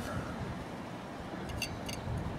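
Quiet, steady background noise with a couple of faint light clicks about one and a half seconds in.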